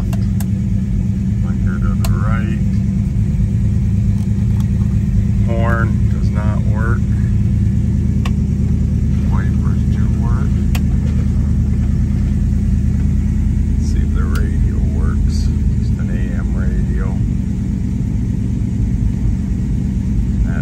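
A 1972 Dodge Charger's rebuilt 318 V8 idling steadily, heard from inside the car's cabin.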